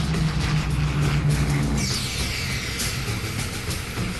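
Steady drone of a C-130's four turboprop engines overhead, mixed with background music. About halfway through, a high sound falls in pitch.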